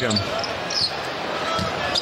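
Basketball being dribbled on a hardwood court over steady arena crowd noise.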